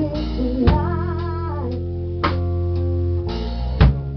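Live band playing an instrumental passage: sustained guitar notes over bass and drums, with a strong drum hit about every second and a half.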